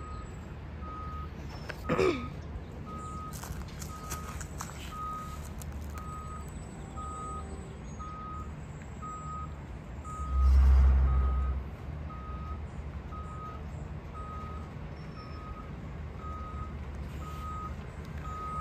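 Autocar roll-off garbage truck reversing: its backup alarm beeps steadily about once a second over the low running of its diesel engine, with a brief louder low rumble from the truck about ten seconds in.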